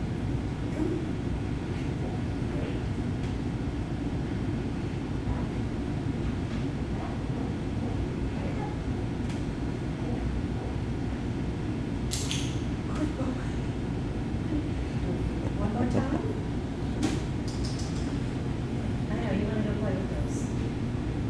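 Steady low background rumble, like a ventilation fan or building hum, with a couple of brief sharp clicks about twelve and seventeen seconds in and a faint murmured voice near the end.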